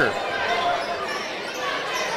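Gymnasium ambience at a basketball game: a steady murmur of crowd voices with court sounds of the game in play.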